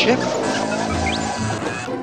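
R2-D2 droid replying with a run of electronic warbling chirps and a short rising whistle, over background music.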